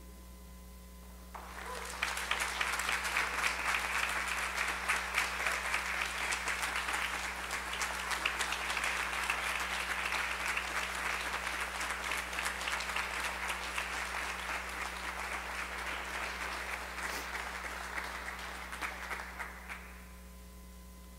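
Congregation applauding after a vocal solo, the clapping swelling in about a second and a half in and stopping just before the end.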